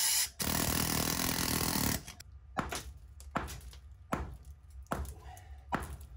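A power tool running against the concrete floor in one steady burst of about a second and a half, then stopping. After it come scattered light knocks and scrapes of broken concrete rubble.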